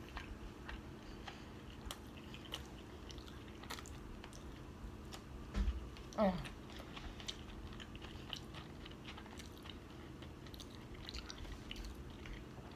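Close-miked chewing of a mouthful of food, heard as faint, irregular soft clicks and squishes from the mouth. A short "oh" comes about six seconds in.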